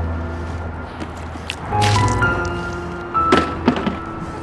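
Background music with a steady bass line. Water splashes against a car windshield in short wet strokes, about two seconds in and again a little past three seconds.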